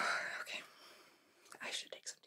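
A woman whispering briefly, then a short quiet pause with a few faint short sounds near the end.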